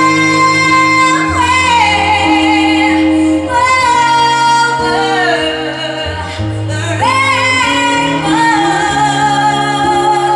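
Woman singing into a microphone over instrumental accompaniment, holding long sustained notes with vibrato and sliding between pitches.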